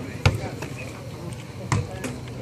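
A football struck twice during a footvolley rally: two sharp thuds about a second and a half apart, with crowd chatter underneath.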